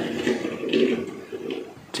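Die-cast toy car rolling across a tabletop as a hand pushes it: an uneven low rumble that fades away in the second half.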